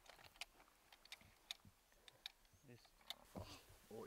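Near silence, broken by scattered faint clicks and ticks at irregular intervals.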